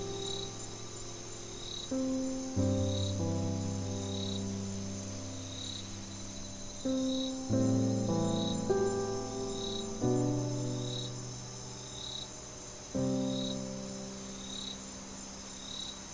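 Slow neoclassical piano with held bass notes and a new chord every few seconds, over crickets chirping in a regular pulse about once a second and a steady high background hiss.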